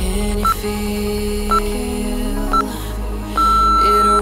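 Workout interval timer counting down: three short electronic beeps about a second apart, then one long beep near the end marking the end of the exercise interval, over background music.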